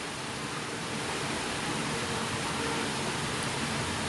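Steady hiss of background noise, with no other distinct sound.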